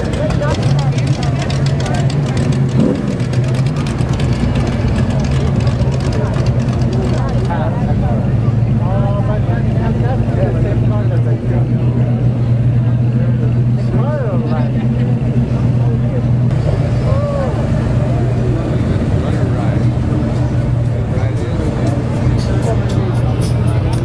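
Engines of classic cars running as they crawl past at low speed, a steady deep drone, over the chatter of a crowd.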